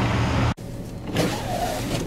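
An engine runs with a steady hum. About half a second in the sound cuts off abruptly, then resumes as a whirring rotary broom throwing snow against the cab glass, over the engine.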